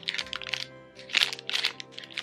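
Plastic candy wrappers of two Peeps packets crinkling and crackling in a few short spells as they are handled, over quiet background music.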